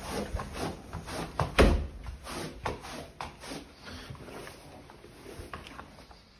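Shuffling footsteps and the scuffs and knocks of shoes being pulled off on a doormat, with one louder thump about one and a half seconds in, the handling sounds thinning out toward the end.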